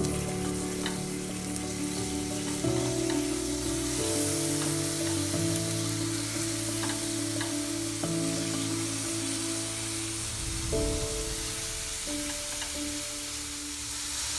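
Diced pineapple sizzling as the pieces are dropped one by one into sugar melted in a non-stick frying pan, the start of caramelizing, over background music of long held notes.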